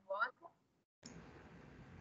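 A brief tail of speech, then dead silence, then from about a second in the faint steady hiss of a video-call microphone that has just been opened.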